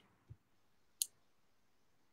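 Quiet room tone with one short, sharp click about a second in, and a faint low thump just before it.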